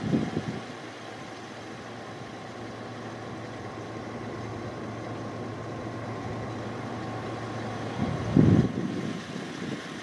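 Truck engine idling steadily with a faint low hum under a steady hiss; a brief louder low rumble comes about eight and a half seconds in.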